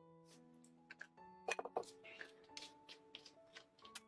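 Quiet background piano music with held notes, over which come a string of small clicks and taps from handling small objects on a workbench, the loudest cluster about one and a half seconds in.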